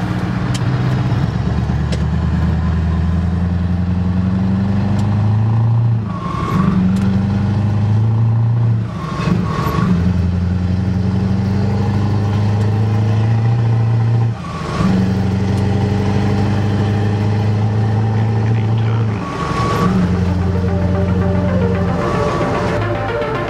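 Scania 4-series 580 V8 truck engine heard from inside the cab, pulling hard up through the gears. The pitch climbs steadily in each gear and drops sharply at each of four gear changes, roughly every four to five seconds.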